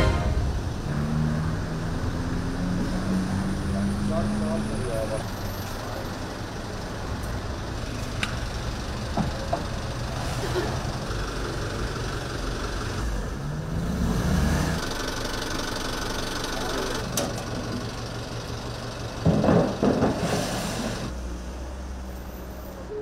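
Street sound: a vehicle engine running under a steady traffic hum, with people talking and a louder burst of voices near the end.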